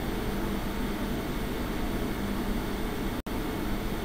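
Steady room noise: an even hiss with a faint low hum, briefly cutting out a little over three seconds in.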